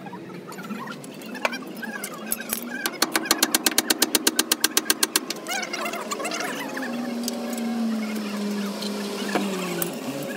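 A rapid, even run of sharp metallic clicks, about ten a second, lasting about two seconds, from tool work on a truck's rear axle and differential housing. An engine drone follows and slides slowly lower in pitch near the end.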